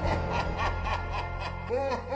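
Horror intro sound effect: a low steady drone under a cackling laugh, about four short syllables a second, with a deeper laugh coming in near the end.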